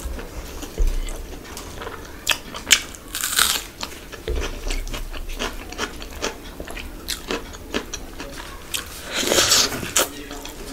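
Close-miked eating: chewing a mouthful of rice and chicken curry, with many sharp wet mouth clicks and smacks. Two longer, noisier bursts come about a third of the way in and near the end.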